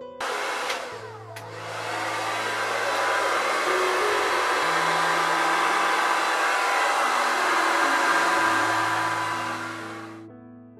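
Hair dryer blowing steadily onto wet acrylic paint. It switches on abruptly just after the start and cuts off at the end.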